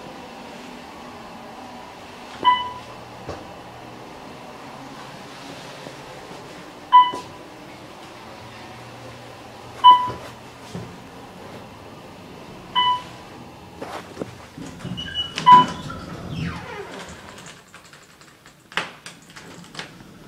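Passenger elevator in motion: a steady low hum from the moving cab, with a short electronic chime about every three seconds as it passes floors, five in all. After the last chime, about three quarters of the way through, the doors slide open with some clicks and rattles.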